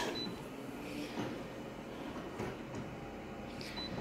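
Office multifunction copier scanning an original: the scanner runs with a faint, steady mechanical sound. A short high beep comes just after the start and another near the end.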